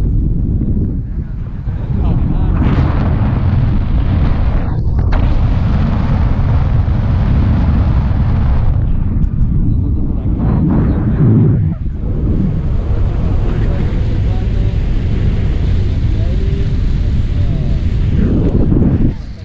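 Wind buffeting the action camera's microphone during a tandem paraglider flight: a loud, low rumbling rush that eases briefly a couple of times.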